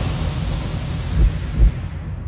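Cinematic logo-intro sound effects: a steady rushing, hissy noise with deep low thuds, two of them in the second half.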